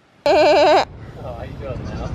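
A young goat bleating once, a loud half-second call with a quavering, wavering pitch, a quarter of a second in, followed by fainter wavering calls.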